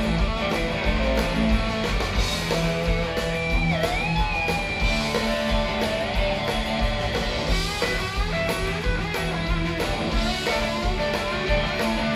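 Rock band playing live, several electric guitars over drums in an instrumental passage. A held lead guitar note bends in pitch about four seconds in.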